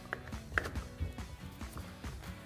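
A few light clicks of a handlebar trim switch housing and cable being handled with gloved hands, about half a second apart, over faint background music.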